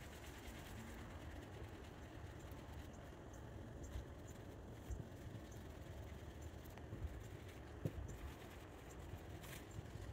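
Faint, soft rubbing of a microfiber applicator pad worked in circles over car paint with scratch remover, over a steady low background rumble, with a few light knocks.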